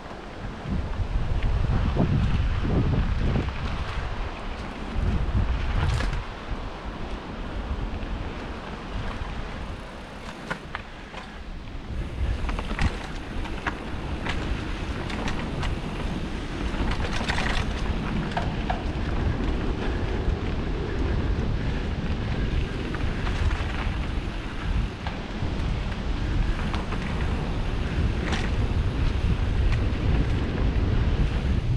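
Wind buffeting the microphone of a mountain-bike-mounted camera at speed, over the rumble of tyres on a dirt trail, with scattered clicks and rattles from the bike.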